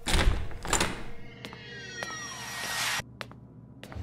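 A loud thunk as a door opens, then a hissing sound-design swell with descending whistling tones that builds in level and cuts off abruptly about three seconds in, followed by a couple of faint clicks.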